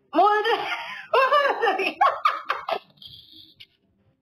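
A woman's voice, speaking and then breaking into quick bursts of laughter about two seconds in, ending with a short breathy hiss.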